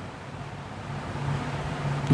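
Steady background noise with a faint low hum that fades in and out, during a pause in speech.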